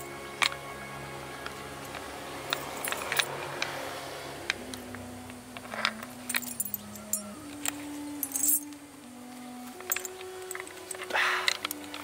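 Small metal chain clinking and rattling in irregular clicks as it is handled and unwound by hand, over soft background music of slow held notes.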